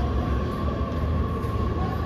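Steady low rumble of background noise with a faint, even hum over it. No distinct knocks or clicks stand out.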